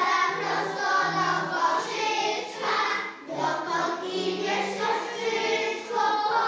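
A group of young children singing a song together in unison.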